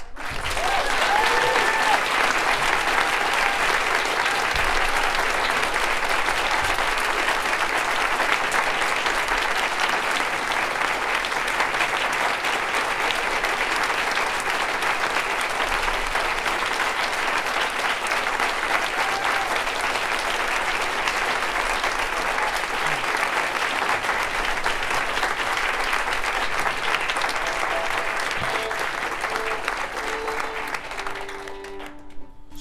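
Audience applauding steadily and at length, tapering off slightly near the end.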